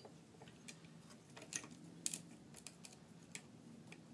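Faint, scattered clicks and light metal taps as a saw chain and guide bar are handled and fitted onto a chainsaw.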